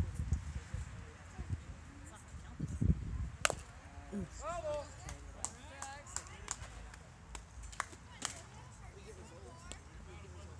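A single sharp pop about three and a half seconds in, the baseball smacking into the catcher's mitt, over distant voices of players and spectators calling out.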